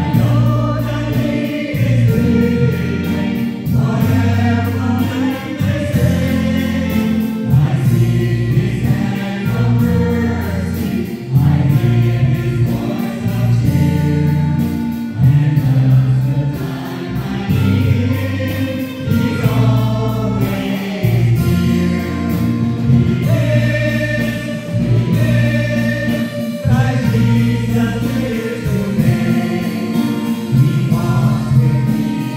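A small mixed group of men and women singing a gospel hymn together into microphones, amplified through a PA, over sustained low accompaniment.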